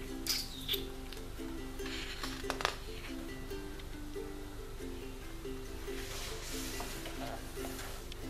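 Background music with a light plucked-string melody, along with paper handling and a colouring-book page being turned near the end.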